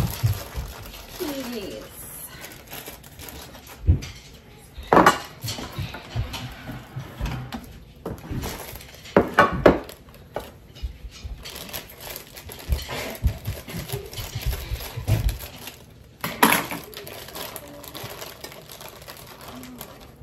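Kitchen handling sounds: dishes and a glass dish knocking and clattering on the counter, and a plastic bag of frozen peas being handled and opened, with the peas poured into the glass dish near the end.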